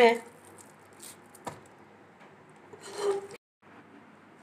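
A spatula scraping and pressing thick, sticky cooked milk-cake mixture against a steel pan and tin, with a louder scrape about three seconds in.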